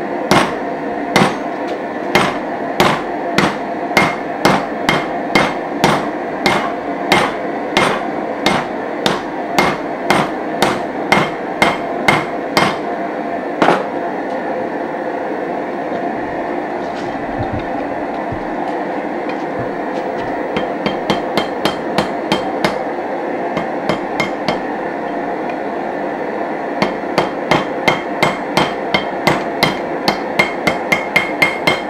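Hammer forging red-hot railroad-spike steel on an anvil. Steady strikes come about one and a half a second for the first half, then stop for several seconds. Quicker, lighter strikes follow, and a run of faster blows near the end, over a steady background noise.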